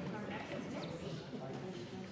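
Indistinct murmur of many people chatting quietly in a large chamber, with a few light taps and knocks.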